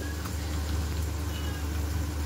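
Chicken and cream cooking in a nonstick pan on a gas stove: a faint sizzle over a steady low hum.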